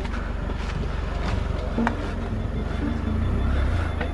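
An SUV's engine running at low revs close by: a steady low rumble.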